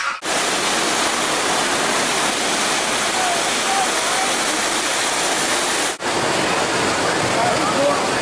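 Steady loud rushing of water and wind from a moving boat, with faint voices under it. It breaks off briefly about six seconds in, and a similar rushing noise carries on after.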